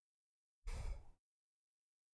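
A man's short sigh, one breath out lasting about half a second, into a close microphone.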